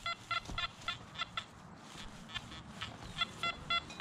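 Nokta Anfibio metal detector giving choppy, broken target tones: short beeps of one pitch, several a second, with a short break near the middle, as the coil sweeps over a target. The signal sounds really junky, the kind of iffy signal the detectorist reads as a target possibly lying beside iron.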